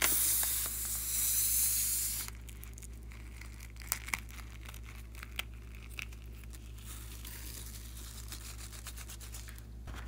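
Air hissing out of an inflated rubber balloon for about two seconds as scissors cut its neck, then a few sharp snips of small scissors cutting through the emptied balloon.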